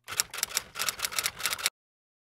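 Typewriter keystroke sound effect: a rapid run of key clacks, several a second, that stops abruptly near the end.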